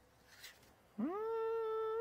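A person humming a long 'mmm' in hesitation while working something out. The hum starts about a second in, rises in pitch briefly and is then held steady.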